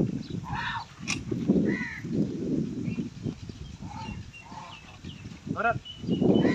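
Indistinct voices talking in short bursts, over rustling and handling noise close to the microphone, with a sharp click about a second in.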